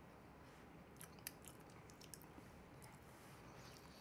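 Very faint chewing of a mouthful of soft cooked purple potato, with a few small clicks about a second in and again near two seconds.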